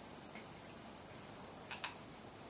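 A cat crunching dry kibble: two short crunches close together near the end, over a faint steady hiss.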